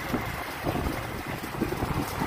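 Air blowing across the microphone from large outdoor pedestal fans: a steady rush with irregular low buffeting.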